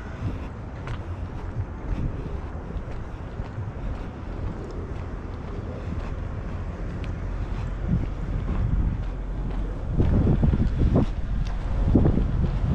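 Wind buffeting the microphone: a low rumble that swells and gusts louder near the end.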